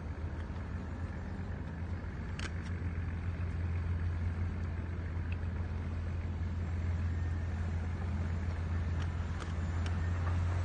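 Shamrock 26 boat's 210 hp Cummins diesel heard from a distance as a steady low drone, growing slowly louder as the boat runs toward the listener at speed.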